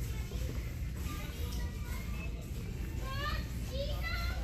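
Faint, distant voices of shoppers in a large store over a steady low hum, with a child's high voice about three seconds in.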